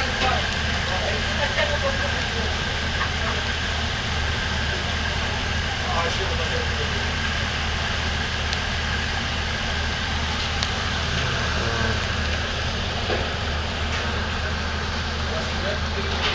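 River cruise ship engines running at idle: a steady low hum under an even machinery noise, with scattered voices.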